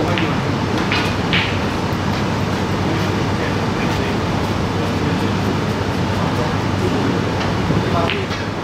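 Steady background noise in a snooker room with indistinct voices, and two short sharp sounds about a second in.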